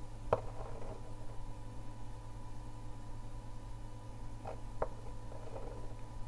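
Quiet room tone with a steady low hum, broken by a few faint knocks from hands handling a small breadboard on a desk: one about a third of a second in, then two close together between four and five seconds.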